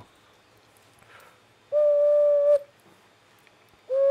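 Chinese ocarina blown in one steady held note lasting under a second, about halfway through, then a second short note at the same pitch near the end.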